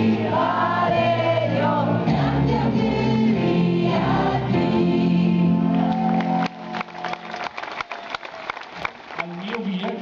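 A band with a group of singers performing live, loud and sustained. The music cuts off abruptly about two-thirds of the way through, and the audience follows with clapping.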